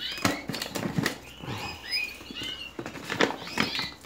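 A large plastic bag of dry egg food crinkling as it is handled, in a string of short, sharp crackles.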